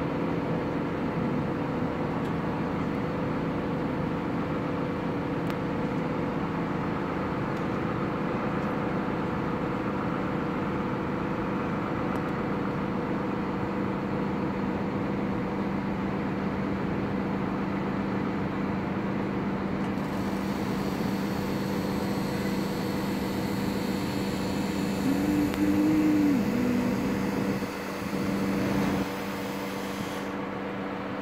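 Steady city background noise: a machinery drone holding a few fixed pitches over distant traffic. About 25 seconds in there is a brief pitched tone and a louder stretch.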